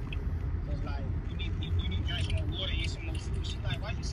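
Steady low rumble inside a car's cabin, with faint, indistinct voices over it.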